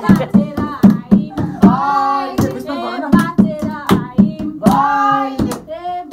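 A group of young people singing together while clapping hands in a steady beat, about two and a half claps a second.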